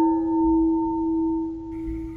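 A struck bell ringing on in one long, steady low tone with several higher overtones, fading a little near the end.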